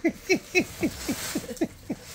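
A woman laughing in a quick run of short syllables, each falling in pitch, about four to five a second.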